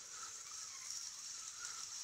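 Faint, steady whir of a Piscifun Alijoz 400 baitcasting reel being cranked by hand, winding 50-pound braided line on under tension from a line spooler.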